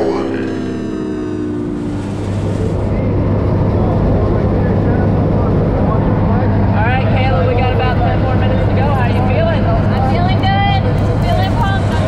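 Propeller engines of a skydiving jump plane droning steadily, heard inside the cabin, growing louder about two seconds in. Voices talk over the drone in the second half.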